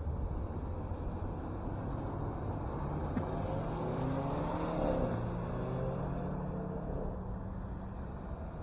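A car passing by on the road, its engine and tyre sound rising to a peak about five seconds in with a falling pitch as it goes past, then fading. Steady low wind rumble on the microphone underneath.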